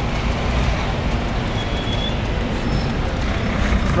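City road traffic: a steady low rumble of engines and tyres, with a coach bus close alongside the car.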